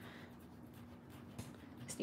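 Faint rubbing of a kitchen paper towel wiped by hand across a craft mat to clean it.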